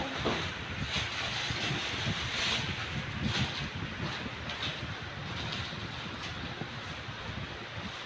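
Steady rushing wind noise with a low rumble from an electric stand fan's airflow blowing across the microphone.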